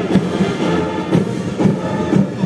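Military band playing a march: brass holding sustained notes over a heavy beat that falls about twice a second.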